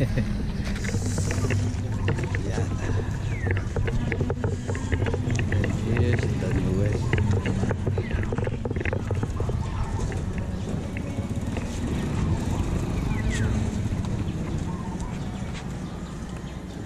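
Outdoor ambience: indistinct voices of people nearby over a steady low rumble, with scattered small clicks.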